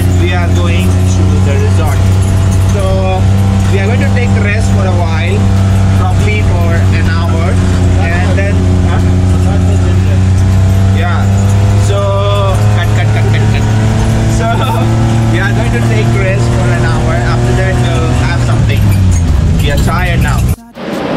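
A van's engine running steadily, heard from inside the passenger cabin as a low, even drone; its pitch drops just before the end as the van slows.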